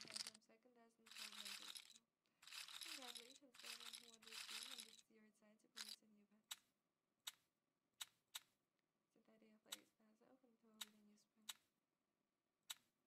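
Faint voice and bursts of hiss-like noise during the first five seconds, then a row of short, sharp clicks roughly half a second to a second apart: the online roulette game's chip-placement sounds as bets go down on the layout.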